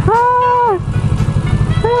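Kawasaki Ninja 650's parallel-twin engine running at low road speed with an even, low pulse. Two short held high tones drop away in pitch at their ends, one early and one near the end.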